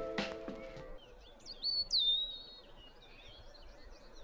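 Background music fades out in the first second, then a songbird sings a short phrase of loud, high whistled notes that slide in pitch, followed by fainter high calls.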